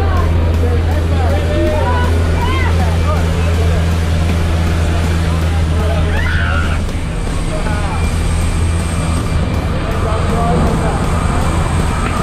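Engine drone of a skydiving jump plane heard inside the cabin, a loud steady hum. About seven seconds in the steady hum gives way to a rougher, noisier rush as the jump door stands open.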